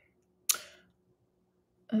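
A single short, sharp click about half a second in, fading quickly, with near silence around it.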